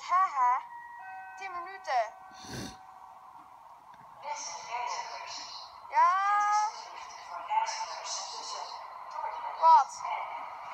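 Drawn-out voice exclamations that bend up and down in pitch, with a few steady chime-like tones about a second in and a short knock a little later. From about four seconds in, a steady hiss with a held tone builds as a train approaches along the underground platform.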